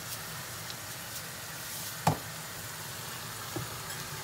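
Onions and eggplant frying in palm oil in a wok, a steady sizzle, with one sharp knock about halfway through and a fainter tick near the end.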